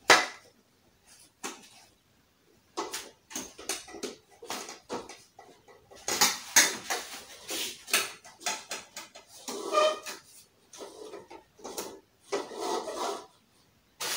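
Knocks, clicks and rattles of a portable wardrobe's metal tube frame, plastic connectors and shelf panels being handled and pressed together during assembly. There is a sharp knock at the very start and a busier run of clatter in the middle.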